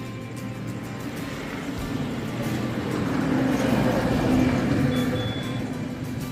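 Background guitar music, with a motor vehicle passing close by: its noise swells to a peak about four seconds in, then fades.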